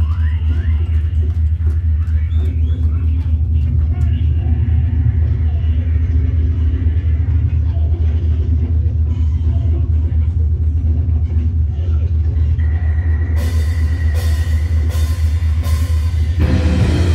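A death metal band's stage rig between songs: a loud, steady low bass drone from the amplifiers under faint voices. About thirteen seconds in a high steady tone comes up, followed by four sharp cymbal hits counting in the next song.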